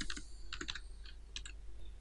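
Computer keyboard keystrokes: a handful of light taps in small clusters, with short pauses between them.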